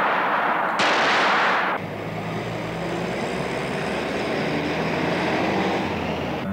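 A revolver shot about a second in, a burst of noise that dies away over about a second, followed by a low steady rumble.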